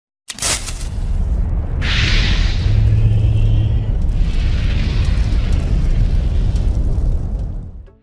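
Logo intro sound effect: a sudden boom about a quarter second in, then a loud, deep rumble with two hissing swells, fading out at the end.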